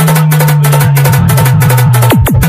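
Loud DJ remix dance music of the kind made for sound-system competitions: a heavy, sustained bass tone under fast, evenly spaced drum hits.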